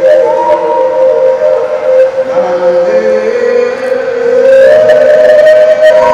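A solo performer's long, held melodic notes, amplified through a handheld microphone, gliding slowly from note to note and rising louder and higher about four and a half seconds in.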